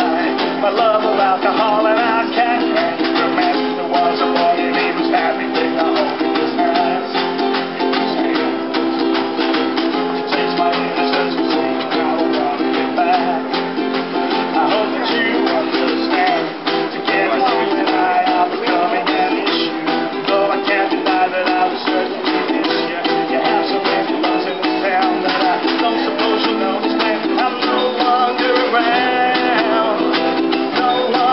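Live acoustic band playing a song: several acoustic guitars strummed steadily, with a snare drum and cymbal keeping the beat.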